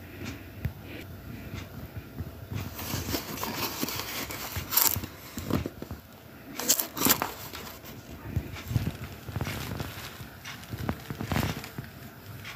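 Irregular scraping and crackling handling noise as a cardboard product box is held and turned close to the microphone, with a few sharper knocks about five and seven seconds in.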